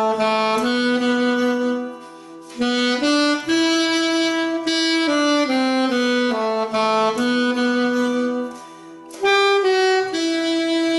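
Alto saxophone playing a hymn melody in long held notes, with two short breath pauses, about two seconds in and near the end, while a quieter backing carries on underneath.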